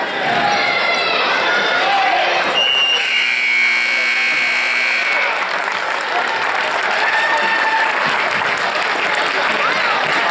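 Gym scoreboard buzzer sounding once for about two and a half seconds, starting about three seconds in as the game clock runs out to zero, marking the end of the period. Crowd chatter and clapping in the gym run underneath.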